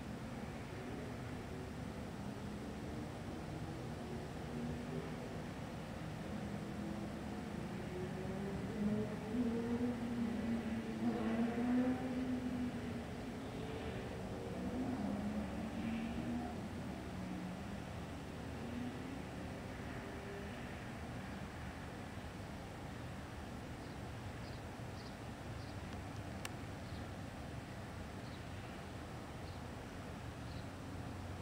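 Steady distant outdoor rumble, with a vehicle's engine passing at a distance: it swells about nine seconds in, is loudest around ten to thirteen seconds, then fades. A few faint high chirps come near the end.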